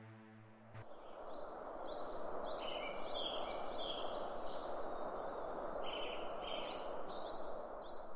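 Small birds chirping in a quick series of short, rising high calls, over a steady outdoor background hiss. The last low tones of music fade out within the first second.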